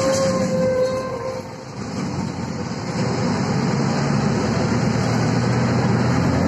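Cabin noise inside a Volvo 7000A articulated bus: a steady engine and running drone, with a brief whine near the start. The noise dips about a second and a half in, then grows louder and steadier from about three seconds.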